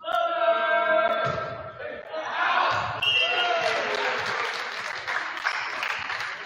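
A volleyball rally in a gymnasium: a few dull thumps of the ball being struck over a crowd and players shouting and cheering, the cheering swelling after the rally ends.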